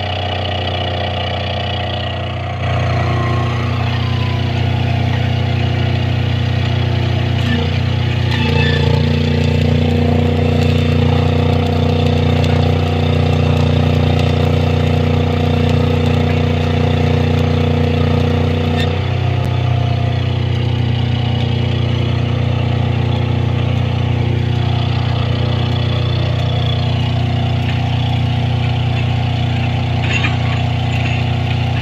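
Heavy construction machine's engine running steadily. Its speed steps up about two and a half seconds in, rises again about eight seconds in, and drops back about nineteen seconds in.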